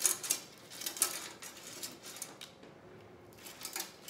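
Pip berry garland being fluffed by hand: its stiff stems and little berries rustle and crackle in a run of small clicks that thins out after about two seconds, with a few more near the end.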